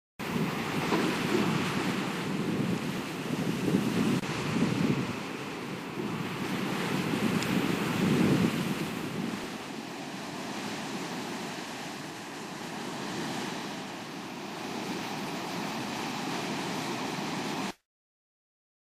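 Rushing noise of surf and wind, swelling in surges over the first half and then steadier, cutting off suddenly near the end.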